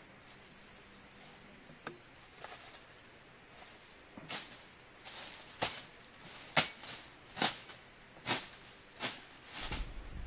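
Machete strokes cutting through undergrowth, sharp chops about once a second starting around four seconds in. Under them runs a steady high-pitched insect drone.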